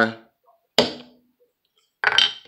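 A single sharp tap about a second in: a mallet striking a smooth triangle beveler to stamp its impression into the leather.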